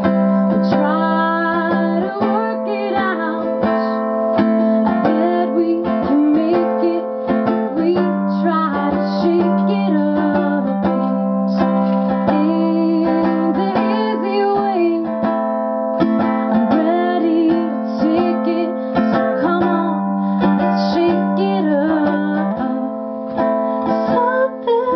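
Ukulele strummed steadily, with a wordless melodic line from the voice sliding and bending over the chords.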